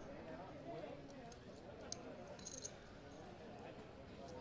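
Faint murmur of voices in the room, with a few light clinks of poker chips, the busiest cluster about two and a half seconds in.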